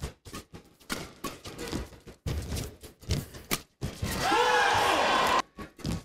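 A fast badminton rally in a large hall: a quick irregular string of sharp racket-on-shuttlecock hits and court footwork. About four seconds in, the rally ends and a crowd shouts and cheers for about a second and a half as the point is won.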